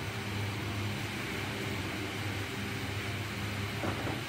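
Steady low mechanical hum with a faint hiss underneath, from an unseen running machine.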